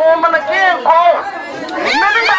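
A woman's voice speaking through a handheld megaphone.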